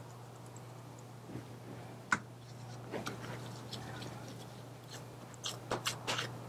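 Gloved hands pressing and patting raw ground turkey into a patty: soft, wet squishes and pats, a sharper one about two seconds in and a few quick ones near the end, over a steady low hum.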